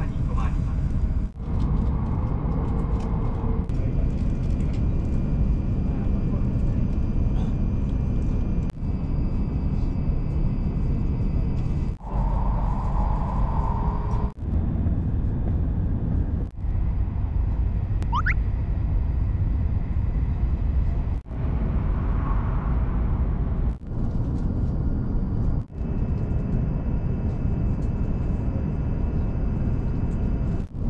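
Joetsu Shinkansen train running at speed, heard from inside the passenger cabin: a steady low rumble and rush of running noise with faint high whining tones. The sound dips briefly every few seconds, and a thin rising whistle-like tone passes about two-thirds of the way through.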